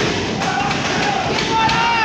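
Thuds of wrestlers' bodies and feet on the wrestling ring's canvas: a sharp one at the start and another about half a second in. A voice calls out in a long held cry near the end.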